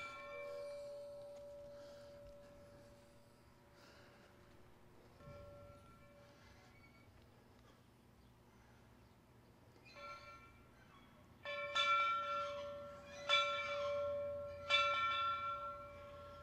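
A locomotive bell rung by hand with single strikes, each ringing on and fading. The strikes come several seconds apart at first, then three come closer together near the end.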